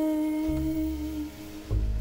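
A woman singing one long held note in a slow jazz ballad, accompanied by piano and bass; low bass notes come in about half a second in and again near the end.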